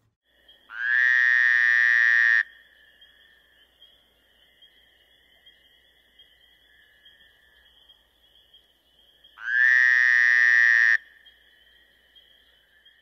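Two loud, frog-like trilling calls, each about a second and a half long and some eight seconds apart, over a faint, steady, high-pitched chorus.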